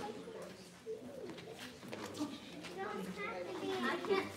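Indistinct talk from children and adults gathered together, with a child's higher voice coming in near the end.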